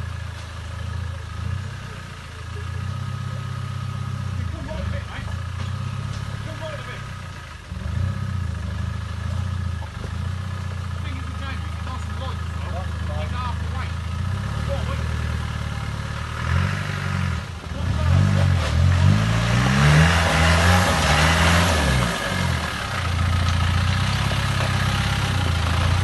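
Land Rover Series engine working in low gear over a steep rocky track, running steadily at first, then revving up and down repeatedly and louder in the second half, with a rushing hiss of tyres on loose stone and water around the loudest stretch.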